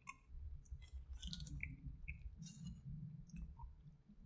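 Faint scattered clicks and light scrapes of a metal fork picking up fries from a takeout container.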